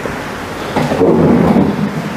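Handheld microphone handling noise: a low rumbling rustle over a steady hiss, growing louder a little under a second in as the mic is moved about.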